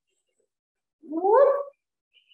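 A single short vocal call, about a second in, gliding upward in pitch, after a second of near silence.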